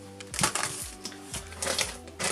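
Plastic-wrapped rolls of food and freezer bags crinkling and rustling as they are handled, in two short bursts, about half a second in and near the end, over soft background music.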